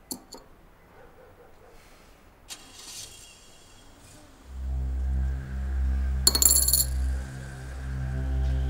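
Light metallic clinks of a small enamelled metal dish being picked up from a wooden dresser: two close together at the start and another about two and a half seconds in. About halfway through, a loud low sustained drone of dramatic background music sets in, with a brief bright burst about six seconds in.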